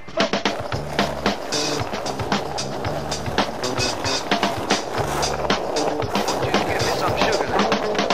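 Skateboard wheels rolling on pavement with sharp clacks of the board, mixed with a music track that has a repeating bass line.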